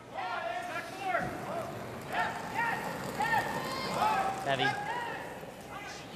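Indistinct men's voices as curlers talk on the ice, heard over the background noise of the arena.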